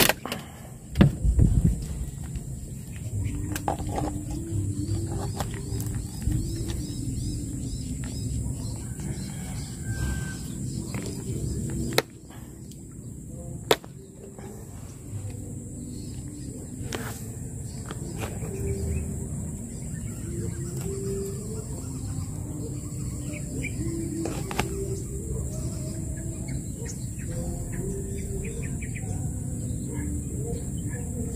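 Outdoor pond-side ambience: a low, uneven rumble with faint bird chirps over a steady high hiss, broken by a few sharp clicks, the loudest about a second in and around twelve and fourteen seconds.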